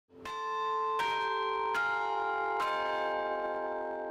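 Four bell strikes, a little under a second apart, each ringing on over the one before and the whole slowly fading away: a chiming intro sting.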